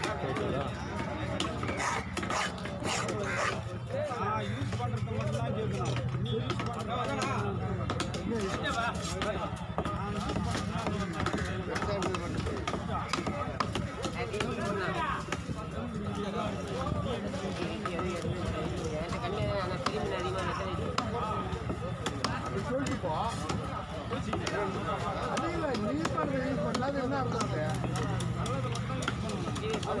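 A knife and cleaver chopping cobia fillets into pieces on a wooden chopping block, with repeated short knocks of the blade into the wood. Steady chatter of voices runs underneath.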